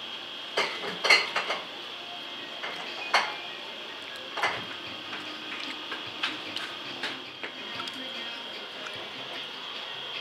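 Scattered clinks and knocks of a metal serving tray as food is scooped from it by hand, the sharpest about a second in and again near three seconds, over a steady high-pitched hum.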